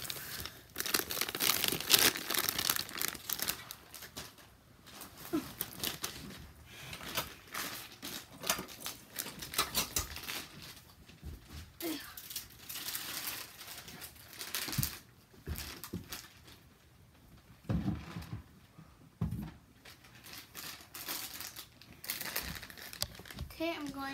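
Plastic snack bag crinkling and rustling as trash is stuffed into it, in bursts through the first half, then quieter handling with a few soft thumps.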